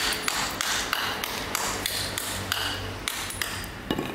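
A steel brick trowel knocking against bricks: a quick run of sharp knocks with a short metallic ring, about three a second, and a heavier thump near the end.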